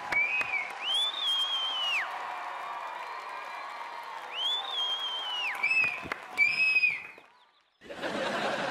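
Audience applauding and cheering, with a string of long whistles that rise in pitch, hold and fall away. The sound cuts off suddenly near the end.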